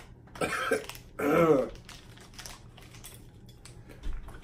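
A man laughing nervously in two short bursts, the second and louder one just over a second in, followed by a couple of seconds of faint small clicks.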